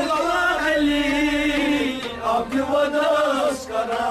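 Men singing a Kashmiri Sufi devotional song in long, wavering held notes, over steady harmonium chords.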